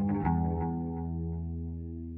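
Background music: a held chord that rings on and slowly fades.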